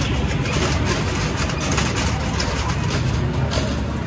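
Steady low rumble with a noisy haze over it: the background din of a busy exhibition hall.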